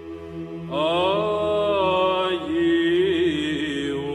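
Background chant: a steady low drone, joined about three-quarters of a second in by a solo voice singing a slow melodic line with long held notes.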